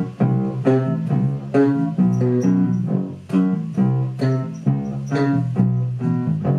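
Playback of a song's layered bass parts: a programmed bass line doubled by a second, added bass, playing a steady run of plucked low notes, a new note every third to half second.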